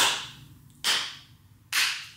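Three slow hand claps, a little under a second apart, each fading briefly in the room.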